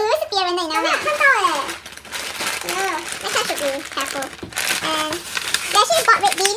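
Plastic shopping bags crinkling as groceries are handled and pulled out, with a woman talking over it.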